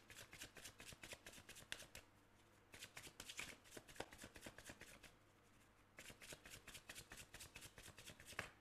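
A tarot deck being shuffled by hand: faint, quick card clicks and flutters in three bouts, with short pauses about two and five seconds in.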